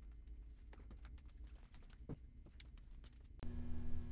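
Faint scattered clicks and light knocks of hands working on a motorcycle's fuel tank and its fittings, over a low steady hum. Near the end the background changes abruptly to a louder, steadier hum.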